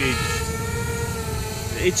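Quadcopter drone's electric motors and propellers whining steadily in flight, the pitch wavering only slightly, over wind rumbling on the microphone.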